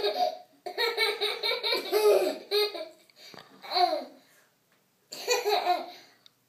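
Toddler laughing in repeated bursts: a long run of laughter in the first half, a short burst past the middle, then after a pause one more bout near the end.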